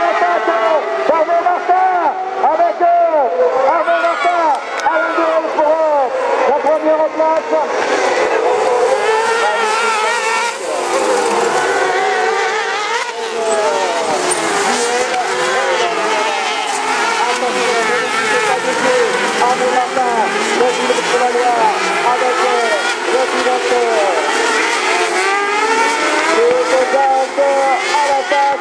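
Several autocross racing buggies running on a dirt track, their engines revving up and down through the gears in a continuous overlapping sound.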